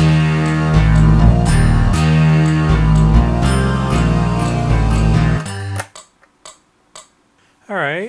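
A layered loop of Roland JD-800 synthesizer parts playing back on a Boss RC-505 MKII looper: a low bass line stepping from note to note with chords above, which cuts off suddenly about five and a half seconds in. A few faint clicks follow, and just before the end a short sound glides down and back up in pitch.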